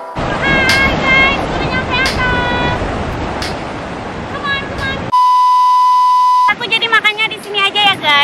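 Wind and surf rushing on the microphone with a high voice calling out in short bursts, then a loud, steady electronic bleep lasting about a second and a half, after which talking resumes.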